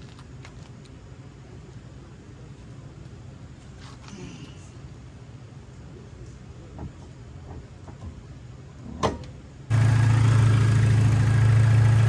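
A quiet low hum with a few light knocks, then a sudden jump to the K24-swapped Acura Integra's four-cylinder engine idling steadily and loudly. The engine is running to bleed air from the cooling system after a new thermostat was fitted.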